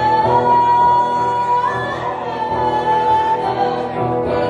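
Live rock band: a woman sings long held notes, one for about a second and a half and then a second after a rise in pitch, over electric guitar and drums.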